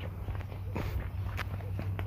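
Footsteps of a person walking, a series of separate steps over a steady low hum.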